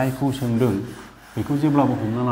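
A man humming a tune, the loudest sound, while a duster rubs across a chalkboard, wiping off chalk writing.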